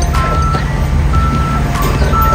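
Toyota forklift's reversing alarm beeping, about one half-second beep each second, over a steady low engine rumble.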